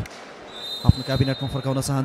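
A volleyball bouncing or being struck once, a single sharp thud about a second in, under a man's commentary, with a faint steady high tone behind it.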